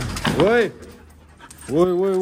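A husky vocalizing: a short whining call that rises and falls in pitch about half a second in, then a long drawn-out howl that starts near the end.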